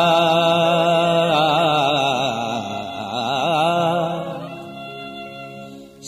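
A devotional Sanskrit stotra chanted in a singing voice: the last syllable of a line is held long, its pitch wavering in the middle, then fading away near the end.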